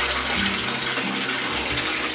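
Water running steadily from a bathtub tap into the tub, an even rush of water.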